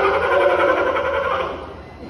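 Sea lion giving a long, loud call, one steady pitched tone that fades out about a second and a half in.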